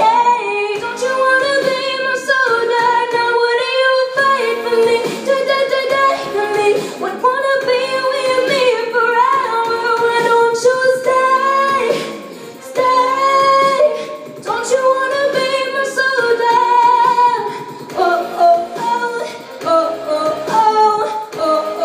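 Young female singer singing a pop song into a handheld microphone, with long held notes that bend in pitch.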